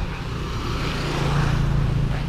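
A motor vehicle's engine running on the road, a steady low hum with road noise that slowly gets louder.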